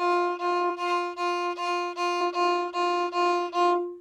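Violin playing about ten short bowed notes, all on one pitch: F natural, played with a low second finger on the D string. The notes come at about three a second and stop just before the end.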